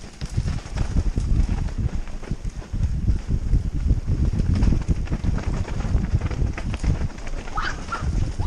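Mountain bike descending a rough dirt trail at speed: a continuous rumble of tyres on dirt, with the bike knocking and rattling over bumps, picked up by a helmet-mounted camera with wind buffeting the microphone. A brief squeak near the end.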